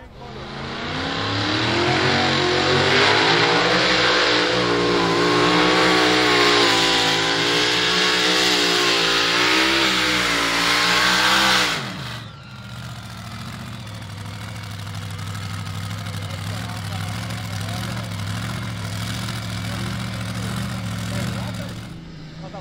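Pulling-vehicle engines at full power: one loud engine whose pitch wavers up and down for about eleven seconds and then falls off sharply. After that, another engine runs steadily and more quietly.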